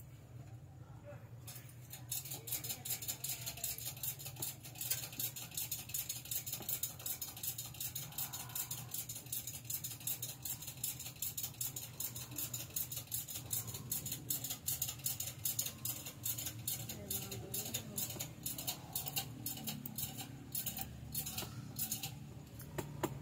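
Rapid, dense run of small clicks from working a computer at the desk, starting about a second and a half in, over a low steady hum.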